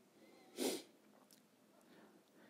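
A single short, sharp intake of breath by the speaker, a quick hiss of air about half a second in.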